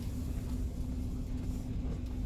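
Cargo van's engine and tyres heard from inside the cabin while driving slowly: a steady low rumble with a faint steady hum.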